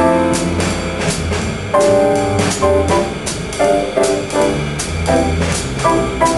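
Jazz piano trio playing: the piano comps in short chord stabs placed on shifting eighth notes, a rhythm exercise displacing the Charleston figure, over a walking bass and a drum kit keeping time on the cymbals.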